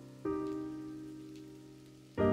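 Slow solo piano background music: a single chord struck about a quarter second in and left to ring and fade.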